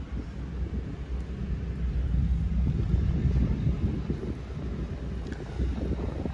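Low, uneven rumble of air buffeting the microphone, with no clear tones or clicks.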